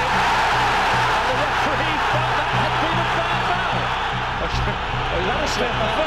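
Background music with a steady bass line over the dense roar of a football stadium crowd, with a male commentator's voice at the start.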